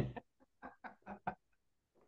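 A person laughing softly: a short run of quick ha-ha pulses that fades out within about a second and a half.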